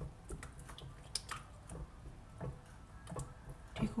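A silicone spatula beating mayonnaise in a glass bowl: irregular light taps and clicks against the glass, a few a second.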